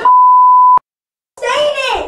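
A loud, steady, single-pitched electronic bleep, of the kind edited in to censor a word, lasting under a second and cutting off abruptly, followed by a moment of dead silence before a child's voice comes back in near the end.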